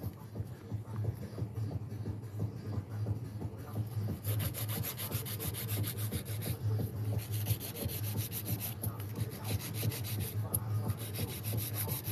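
A 100-grit hand nail file rubbing back and forth along the sides of pre-made gel stiletto nails, a steady soft scraping as the side walls are filed straight.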